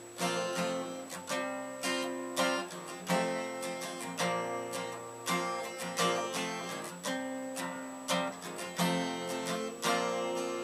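A cheap acoustic guitar, capoed up the neck, strummed in chords at roughly one strum a second. Each strum is left to ring as the chords change.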